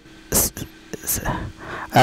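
A man's breathy whispering and breath sounds, with two short hissing bursts, one about half a second in and one about a second in.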